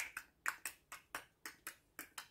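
A person's tongue clicks, made close to a handheld microphone in a quick, even run of about five a second, imitating the clicks of a click language. They sound a bit like the clucking used to urge on a horse.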